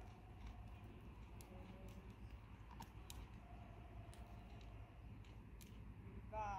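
Near silence: a low outdoor rumble with scattered faint light clicks.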